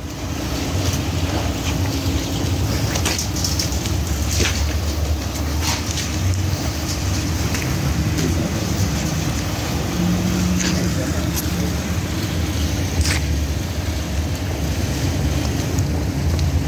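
Parked police car's engine idling steadily, heard up close, with a few scattered faint clicks over it.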